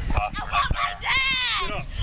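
A young girl screaming in distress: one long high-pitched wail about a second in, falling at its end, after short knocks and rustling from the struggle at the body-worn camera.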